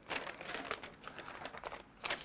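Paper sewing pattern pieces rustling and crinkling as they are handled and turned over, an irregular run of quick crackles.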